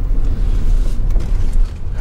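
Steady low road and engine rumble heard inside a moving car's cabin.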